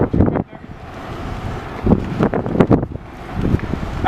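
Wind buffeting the microphone of a handheld camera in irregular low gusts, with a few knocks.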